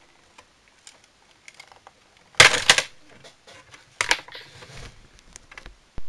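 A flathead screwdriver used as a wedge to break the glue holding a television speaker in its plastic housing: small clicks and scrapes, with two louder clattering bursts about two and a half and four seconds in.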